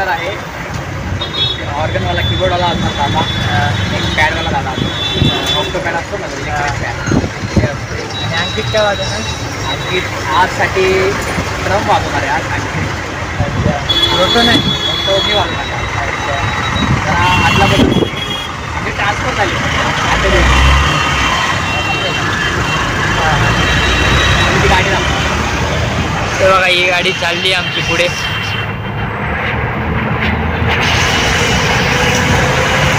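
Road traffic and a vehicle's engine rumbling steadily under voices talking, heard from an open vehicle moving through city traffic.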